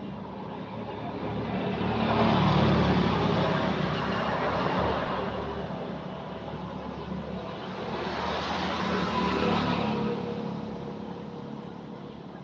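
Two road vehicles passing one after the other, each engine-and-tyre sound swelling and then fading away, the first loudest about two and a half seconds in, the second around nine and a half seconds.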